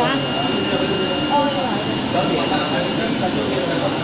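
Steady rushing machine hum of an auto-feed flatbed cutting table at work, with a thin, high, steady whine over it.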